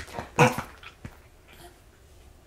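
A baby burping once, a short loud burp about half a second in, while being held upright after his bottle.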